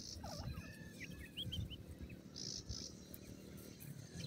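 Francolin (teetar) chicks peeping: a quick string of short chirps and rising calls in the first second and a half or so, over a low rumble.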